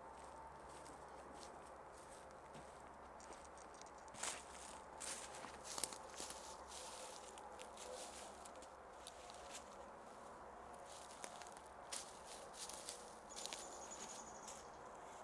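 Faint footsteps crunching in dry leaf litter and twigs, heard as scattered crackles: a cluster about four to six seconds in and more near the end.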